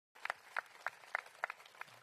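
Light applause from a few people: distinct, evenly paced hand claps, about three to four a second, rather than a full crowd.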